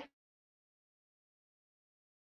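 Dead silence from an audio dropout in a livestream, with a voice cut off abruptly at the very start.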